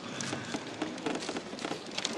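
Audience applause: many irregular hand claps.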